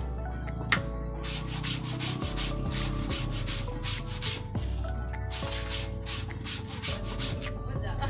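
Rhythmic hand scraping, about three strokes a second, with a short pause about halfway through.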